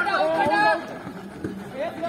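Several men shouting and calling out to each other during a handball game, their voices overlapping, loudest in the first second and then fainter.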